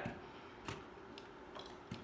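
Faint handling noise: four light clicks, about half a second apart, as gear is moved about on a workbench.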